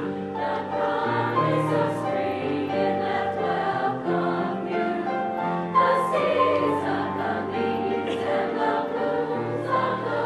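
Women's choir singing slow, sustained chords with piano accompaniment, the piano holding low bass notes under the voices.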